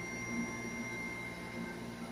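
Quiet room tone with a faint, steady high-pitched electronic whine and hum.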